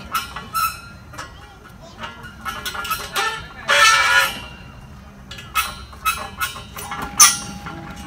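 A child's short wordless voice sound about halfway through, among scattered light knocks and clicks, with one sharp knock about a second before the end.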